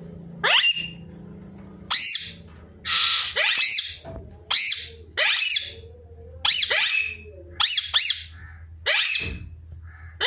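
Alexandrine parakeet giving a series of about a dozen loud, harsh squawks, roughly one a second, each sweeping up and down in pitch, over a low steady hum.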